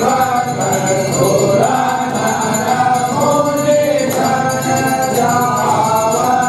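Voices singing a Hindu aarti hymn together in continuous, held melodic lines.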